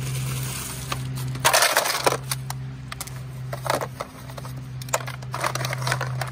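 Ice cubes crunching and clinking as a gloved hand piles them onto a tied shirt in an aluminium-foil tray for ice dyeing. There are a handful of separate sharp crunches, with a cluster near the end, over a steady low hum.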